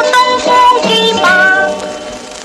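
A Cantonese film song playing: a woman singing over instrumental accompaniment, with held, gliding melodic notes.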